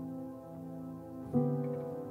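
Slow, quiet piano music: a held chord dies away, then a new, louder chord is struck about a second and a half in.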